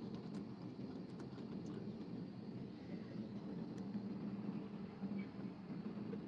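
Faint steady low hum over a light hiss, with a few soft ticks: the background noise of a live audio-chat stream while no one talks.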